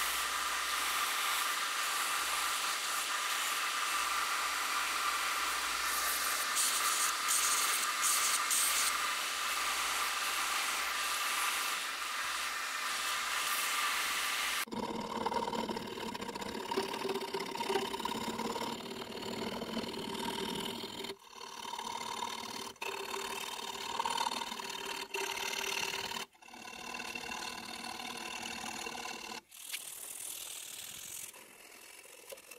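Belt grinder running as an aluminium weld buildup on a brake lever is ground against the belt: a steady hiss with a held tone. About fifteen seconds in it cuts off abruptly, and hand filing of the lever follows in short clips separated by sudden cuts.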